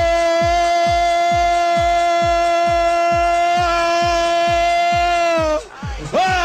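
A radio football commentator's goal cry: one shout held on a single steady pitch, breaking off near the end. Under it runs a music bed with a steady kick-drum beat, a little over two beats a second.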